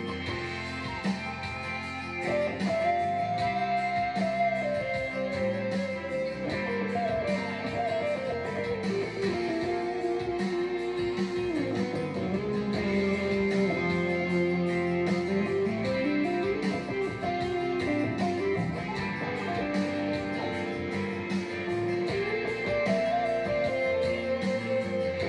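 Electric guitar playing an improvised lead line, holding long notes and sliding and bending between them, over a slow soulful ballad backing track in F.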